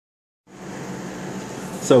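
A steady background hiss with a faint low hum, starting about half a second in; a man's voice begins just before the end.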